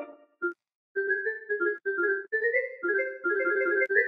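Bell synth from a Serum bell preset playing a simple melody in short notes, several a second, after a brief silence about half a second in.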